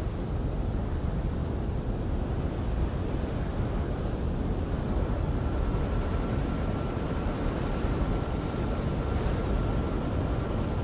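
Steady low rumbling ambient noise with no music. About halfway through, a faint steady high whine joins it, along with a fast, fluttering high chirring.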